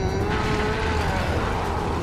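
Anime battle soundtrack: a loud, steady rumble of sound effects as one giant titan grapples with and shoves another, with faint held musical tones underneath.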